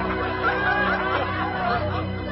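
A man laughing over background music made of steady held notes.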